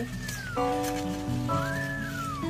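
A cat mewing twice, each a short high call that rises and then falls in pitch, over background music with sustained notes.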